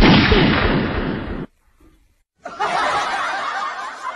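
A single loud gunshot bang, sharp at the start, with a noisy tail of about a second and a half that cuts off suddenly. Music starts about two and a half seconds in.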